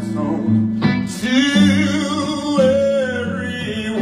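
Live band music: a male singer with guitar, drums and other backing, the wavering sung melody coming in about a second in over held chords.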